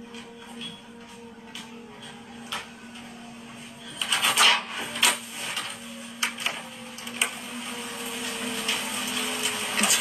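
Rain falling, heard as a steady hiss that comes up about four seconds in, with scattered sharp clicks and knocks and a low steady hum underneath.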